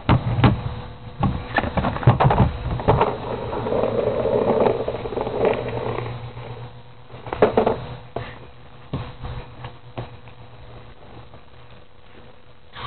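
Skateboard on asphalt: the wheels rumble along the road, with a run of clacks and knocks from the board in the first few seconds and another cluster a little after seven seconds.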